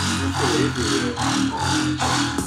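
Electronic background music.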